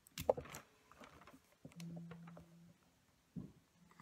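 A few sharp plastic clicks from a fine-tip pen being handled and uncapped, then faint light ticks of the pen against the paper. A low steady hum comes in for about a second partway through.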